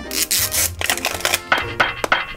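Crinkling and tearing of the plastic outer wrapper on an LOL Surprise ball as it is peeled off by hand, in a quick run of crackles, over background music.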